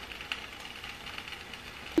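Faint, steady sizzle of bacon strips frying in a dry frying pan, with a few light crackles.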